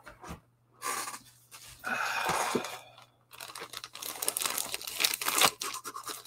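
Plastic bag crinkling and rustling in irregular bursts as a slabbed, CGC-graded comic is handled in it.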